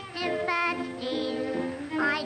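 A high, girlish female voice singing a song with instrumental accompaniment.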